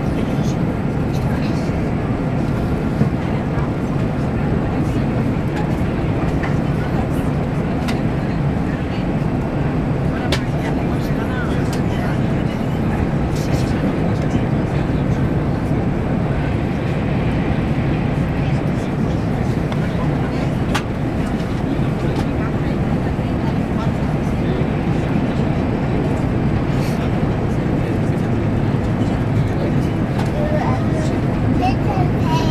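Low, steady running noise inside a moving train carriage, with a few faint clicks.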